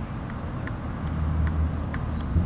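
Steady low outdoor rumble with faint short ticks scattered through it.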